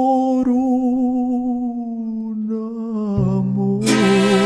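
Mariachi-style ranchera backing music in an instrumental passage: long held melody notes with vibrato, low bass notes coming in about three seconds in, and brass entering loudly right at the end.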